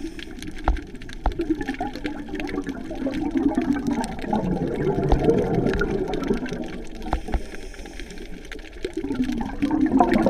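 Underwater bubbling and rushing of a scuba diver's exhaled breath, heard through the camera housing, swelling and easing off with the breathing, with scattered sharp clicks.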